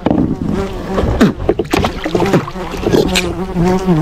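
Beetles buzzing close to the microphone, a steady, slightly wavering drone, with a few sharp knocks as a large pirarara catfish is hauled onto a plastic kayak.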